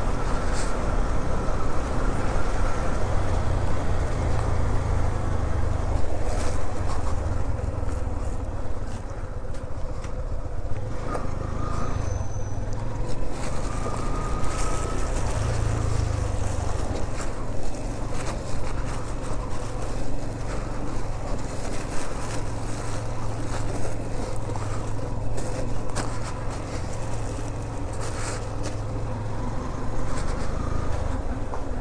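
Motorcycle engine running steadily as the bike is ridden at low speed, heard from the rider's position, with a few short knocks along the way.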